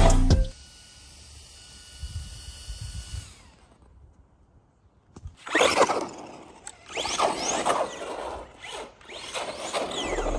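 Brushless-converted HBX 2996A RC car driving on 3S power, its Hobbywing Ezrun sensored brushless motor whining up and down in pitch with the throttle over tyre noise on the asphalt, from about halfway in. Before that, music cuts off about half a second in, followed by a faint, mostly quiet stretch.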